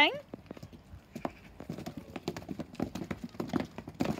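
A group of children stomping their feet on wet playground tarmac: many quick, irregular, overlapping footfalls.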